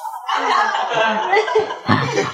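People chuckling and laughing, with some talk mixed in.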